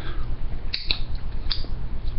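A few short clicks and crinkles from a coffee filter being handled and knocked to shake used grounds into a funnel, over a steady low hum.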